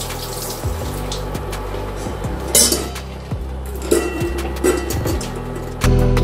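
Seafood hotpot broth bubbling at a boil in a large steel pot, with a steady low hum underneath and scattered light clicks. A brief louder splash or scrape comes about two and a half seconds in.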